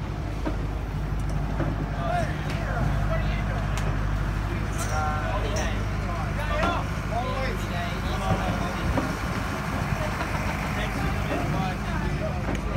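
Tour catamaran's engines idling at the wharf: a steady low hum, with scattered voices of people on the pier over it.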